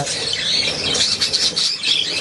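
Budgerigars chattering, chirping and squawking, many birds at once in a dense, steady chorus.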